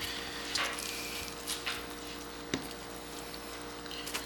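Skin being peeled by hand off a blanched geoduck siphon: a few soft, wet peeling and slipping sounds and one small tick, over a steady faint hum.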